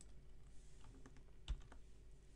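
Faint computer keyboard typing: a few light keystrokes, with one sharper keystroke about one and a half seconds in.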